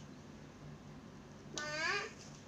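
Quiet, then near the end one short, high vocal call that rises and falls in pitch.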